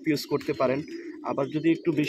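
Pigeons cooing, mixed with a man's voice.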